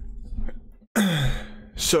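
A man sighs about a second in: a breathy exhale with his voice falling in pitch.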